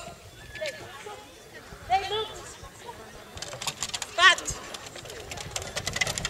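A few short voiced calls, and from about halfway a quick run of light taps: a dog's feet running over the wooden dog walk of an agility course.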